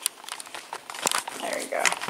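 Handling noise from a phone camera being taken off its tripod and carried: a quick run of clicks, knocks and rustling against the microphone.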